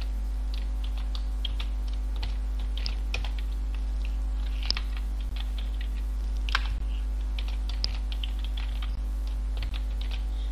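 Typing on a computer keyboard: irregular keystrokes with a few louder key taps, over a steady low electrical hum.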